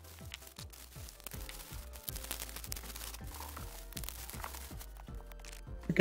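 Bubble wrap crinkling and crackling as it is pulled off the pieces of a plastic figure, under quiet background music with a regular beat.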